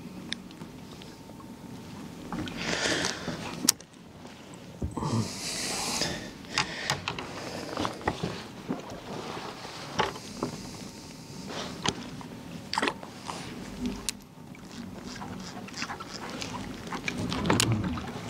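Handling noise on a fishing kayak: scattered sharp clicks and knocks of rods and gear, with two short bursts of rushing noise in the first few seconds.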